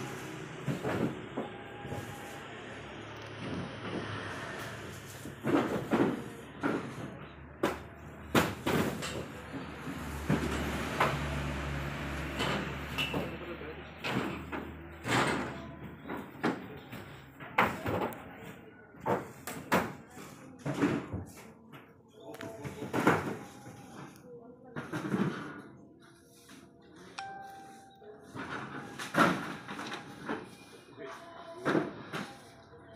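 Repeated knocks and bumps of water cartons and jugs being handled, with voices in the background. A low hum runs for several seconds near the middle.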